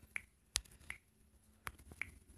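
About five faint, sharp clicks at uneven spacing, each short with a slight ring.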